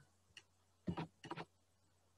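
A handful of faint computer mouse clicks in the first second and a half: a light one, then a pair and a quick cluster.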